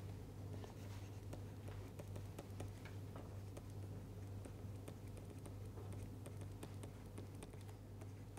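Faint tapping and scratching of a stylus writing on a pen tablet: many small, irregular clicks, over a steady low hum.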